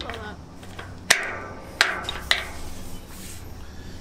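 Metal railing knocked three times, sharp clanks with a brief metallic ring, about a second in, near two seconds and just after.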